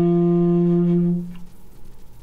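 Alto saxophone holding a low note that ends a falling D Dorian phrase, stopping about a second in.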